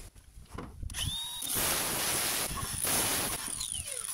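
A handheld power tool winding up about a second in and cutting across a sheet-steel downpipe, a dense grinding noise with a steady high whine, then winding down with a falling pitch near the end.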